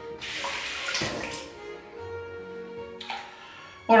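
Water running from a bathroom sink tap in two short bursts, the first about a second and a half long, the second near the end, under quiet background music.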